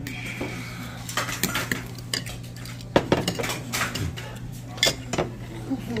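Metal chopsticks clinking and scraping against a stainless steel pot and bowls as noodles are served out, a series of sharp clinks with the loudest about three seconds in. A steady low hum runs underneath.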